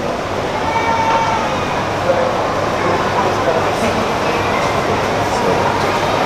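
Steady, loud background noise of a busy place, with indistinct voices talking in it.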